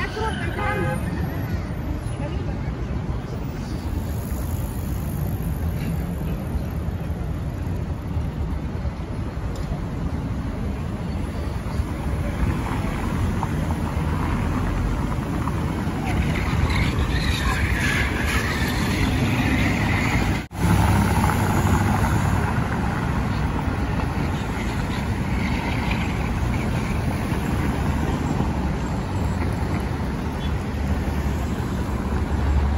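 Busy city street ambience: steady traffic noise from passing cars with the voices of people walking nearby. The sound drops out for an instant about twenty seconds in.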